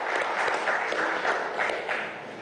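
Audience applauding: a dense patter of many hands clapping that dies away at the end.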